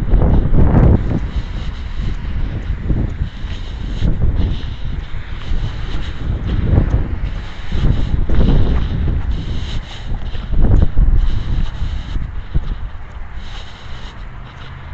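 Wind buffeting the camera's microphone, a loud low rumble that comes in gusts, swelling and falling every second or two.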